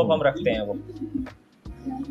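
Brief, indistinct speech, with a low steady hum in the pauses.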